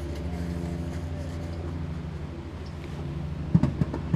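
A motor engine running steadily with a low hum, and a few sharp knocks near the end.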